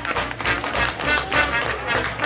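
Small traditional jazz band playing an instrumental passage in swing time: string bass notes under a steady chopped rhythm of about four strokes a second from banjo, guitar and washboard, with trombone and cornet lines over it.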